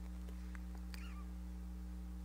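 Steady low electrical mains hum, with a few faint clicks and a brief squeak falling in pitch about a second in.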